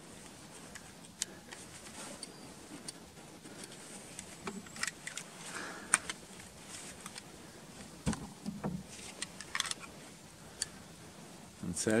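Scoped bolt-action hunting rifle being unloaded by hand: a scattering of light metallic clicks and knocks as the magazine is taken out, the bolt is worked and the cartridges are handled.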